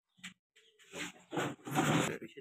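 Homer pigeon held in the hand: a short click, then three noisy bursts about every half second, each louder than the last.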